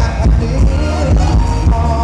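Live band playing Thai ramwong dance music, loud, with a heavy pulsing bass and a gliding melody line over it.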